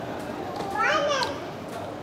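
A child's high-pitched voice calling out briefly about a second in, over the low murmur of a busy dining room.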